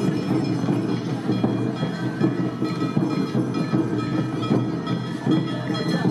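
Awa odori festival music (narimono) accompanying a dance troupe: drums and small hand gongs beating a steady, driving rhythm, with flute tones over it.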